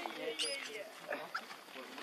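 Young macaque crying in a few short, high squeaks and whimpers, the clearest about half a second in.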